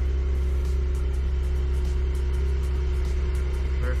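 2021 Porsche 911 Turbo S's twin-turbo flat-six idling, heard from inside the cabin as a steady low drone with a constant hum over it.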